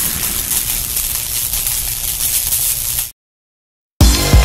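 Intro sound effect: the long rumbling, noisy tail of a boom, fading gradually and then cutting off suddenly about three seconds in.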